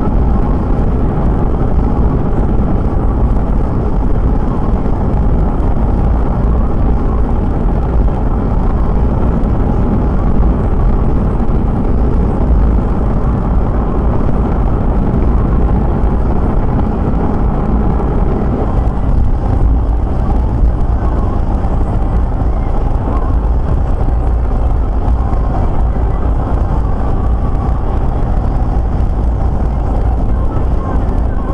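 Car driving at motorway speed, heard from inside the cabin: steady tyre, road and engine noise. Its tone changes a little about two-thirds of the way through.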